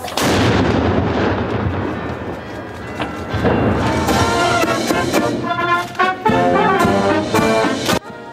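A howitzer fires a single blank noon-gun shot, the report echoing and dying away over about three seconds. A military brass band then starts playing about three to four seconds in.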